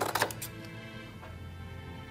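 Scissors snipping through paper card a few times in the first half second, then soft background music.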